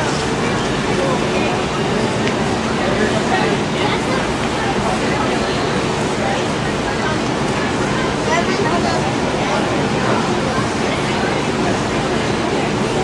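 Indistinct voices and chatter over a steady background noise in a large gym, with no single voice standing out.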